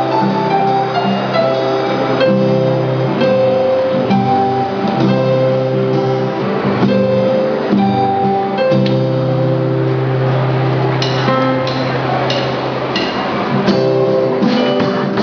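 Live instrumental music from a small band: strummed acoustic guitar over held keyboard notes, with a drum kit. Sharper drum and cymbal hits come through in the last few seconds.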